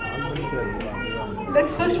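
Indistinct voices talking off the microphone, then a woman's voice starts speaking into the microphone near the end.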